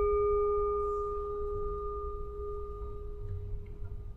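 A struck meditation bell ringing on and slowly fading: one steady low tone with fainter, higher overtones.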